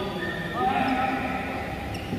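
Men's voices calling out between points of a badminton game, with one loud, drawn-out exclamation about half a second in.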